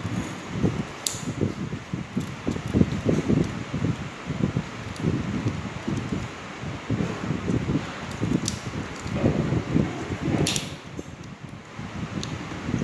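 Rustling and handling noise as fingers work enamelled copper winding wire into the insulated slots of a pump motor's stator, over a steady hiss. A few sharp clicks come about a second in and twice near the end.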